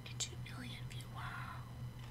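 A woman whispering faintly under her breath, in short breathy snatches with small mouth clicks, over a steady low electrical hum.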